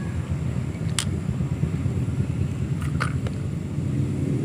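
A steady low rumble, with a few faint clicks about a second in and again about three seconds in.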